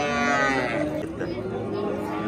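A young bull mooing: one long, steady call that ends a little under a second in, followed by people talking nearby.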